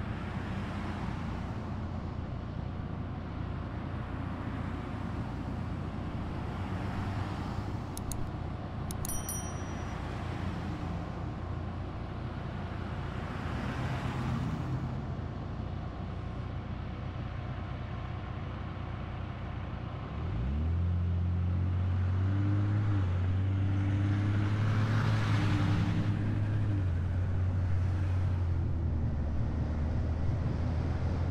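Car engine idling at a red light while other cars pass with swelling road noise. About two-thirds of the way through, the engine climbs in pitch and gets louder as the car pulls away and accelerates.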